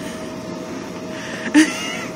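Salon hood hair dryer blowing with a steady whir and a faint steady hum. A brief burst of a voice stands out about one and a half seconds in.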